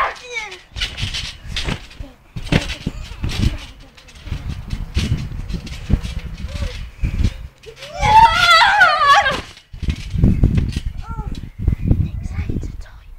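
A child's high-pitched squeal, about eight seconds in and lasting about a second and a half, with a shorter squeal at the very start. Low dull knocks and rumbles close to the phone's microphone, from scuffling and handling, run between them.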